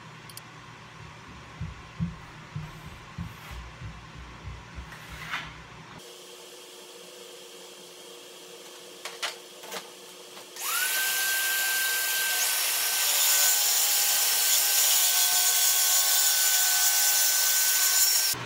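A few light knocks and scrapes of marking out plywood, then a low steady hum from the dust extractor. About ten and a half seconds in, a DeWalt track saw spins up with a rising whine that settles to a steady high whine as its blade cuts through the plywood sheet.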